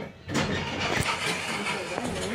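Indistinct voices over a steady noisy background, with a single sharp click about a second in.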